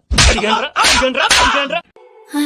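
Loud slaps to the face, the first right at the start and more sharp smacks later, with a man's voice between them.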